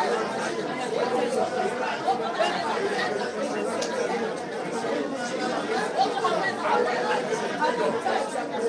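Many voices praying aloud at the same time, overlapping and out of step with each other, so that no single voice stands out: congregational prayer.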